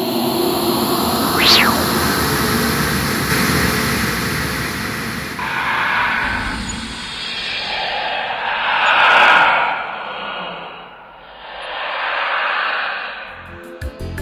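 Film-intro sound design: a dense noisy drone with a brief rising-and-falling sweep about a second and a half in, then several swelling whooshes.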